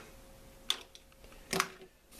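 Quiet handling of small gear on a desk: one light click a little under a second in, as an item is set down, then a short soft handling sound near the end.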